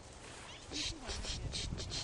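Soft swishing footsteps through grass: a quick run of brushing noises that starts just under a second in, with a faint voice underneath.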